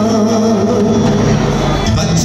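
Live gana song: a male singer over keyboard and drum kit, played loud in a large hall.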